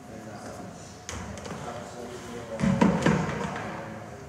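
Plastic buckets being handled and set in place on a stage: a knock about a second in, then a short cluster of heavier thumps near three seconds in.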